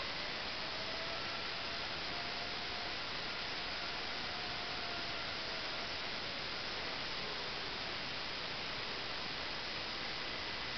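Steady hiss, with a faint whine from a small robot's DC gear motors, driven by HB-25 motor controllers, that rises and falls gently in pitch as it turns in place.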